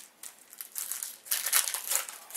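Foil trading-card pack wrapper crinkling as it is handled and torn open, in a run of rustles that grow louder in the second second.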